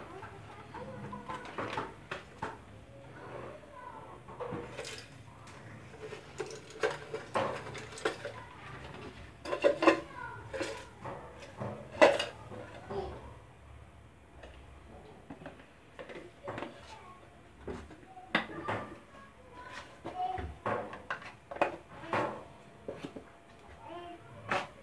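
Irregular clinks and knocks of kitchen pots, dishes and utensils, loudest about ten and twelve seconds in.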